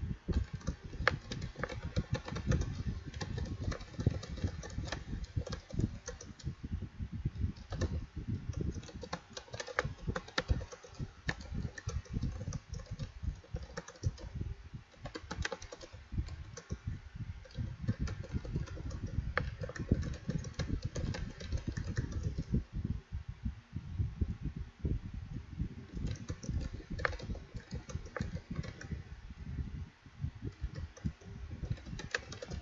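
Continuous typing on a computer keyboard: rapid, irregular keystrokes clicking one after another.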